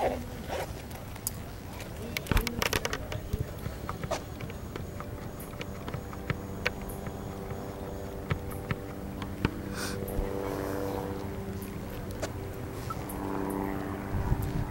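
Handling noise from a handheld camcorder: scattered clicks and rubbing, busiest about two to three seconds in. From about five seconds in a steady low hum with several pitches holds underneath.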